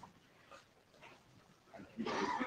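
Near silence: faint room noise with a soft knock at the start and a couple of faint blips.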